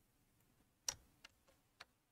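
Four faint, short computer mouse clicks while a 3D model is edited on screen. The first and loudest comes about a second in, and the others follow roughly a third of a second apart.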